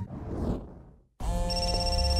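Telephone ringing: steady electronic ringing tones that start suddenly about a second in, after a brief dead silence.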